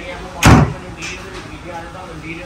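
A single loud slam about half a second in: the Mahindra Thar's bonnet being pushed shut.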